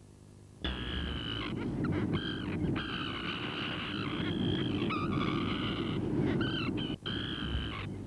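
An eerie electronic sound effect cuts in suddenly about half a second in: warbling high tones that waver and break up over a loud rumbling noise, with a brief drop near the end.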